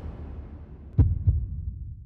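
Two deep, booming thuds about a third of a second apart, the first louder, over the fading tail of a low rumble: a television transition sound effect.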